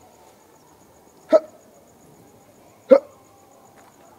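A man's voice gives two loud, short hiccup-like bursts about a second and a half apart.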